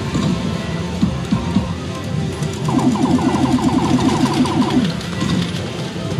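Disc Up pachislot machine sounds over music, with scattered clicks. Near the middle comes a rapid run of short repeated electronic tones, about ten a second, lasting some two seconds.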